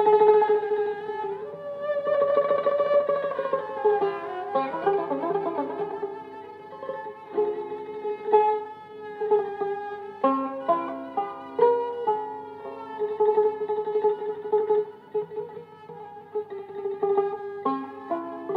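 Turkish tanbur, a long-necked fretted lute, playing a slow melody of long held notes, some bending in pitch, between quicker runs of shorter notes.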